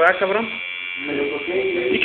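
Tattoo machine buzzing steadily, with people talking over it at the start and again near the end.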